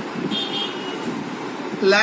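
Steady low rumble of background road traffic, with a brief faint high-pitched toot about a third of a second in.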